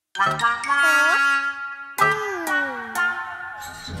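Cartoon game sound effects from a toy tablet as numbers are tapped: a bright chiming jingle, then about two seconds in a fresh chime with tones sliding downward in pitch, a cue that the answer is wrong.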